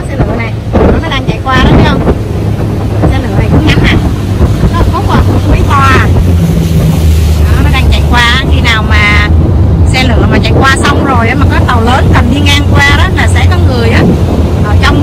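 A boat's motor runs steadily, with wind buffeting the microphone.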